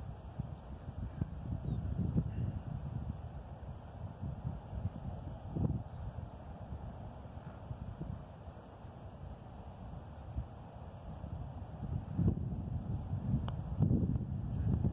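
Wind buffeting the microphone, an uneven low rumble that swells and fades. Near the end comes a light click of a putter striking a golf ball.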